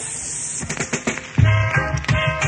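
Reggae dubplate on a sound system: a hiss with scattered crackling clicks, then about 1.4 s in a reggae rhythm comes in with a heavy bass line.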